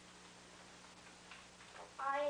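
Near silence: faint hiss with a steady low hum.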